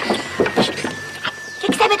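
A quavering, bleating call like a goat's, followed near the end by a woman's voice.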